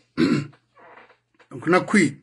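A man's voice in short, halting bursts: a brief vocal sound near the start, a fainter breathy sound in the middle, then a longer voiced phrase near the end.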